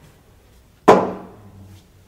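A single sharp knock about a second in, with a ringing tail that fades over most of a second.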